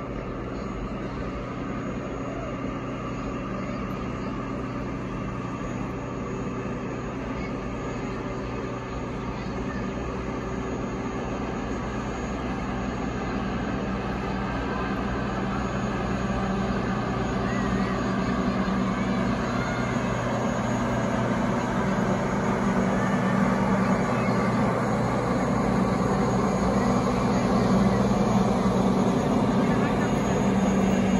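Train cars rolling past on the track: a steady rolling rumble with a low hum, gradually growing louder.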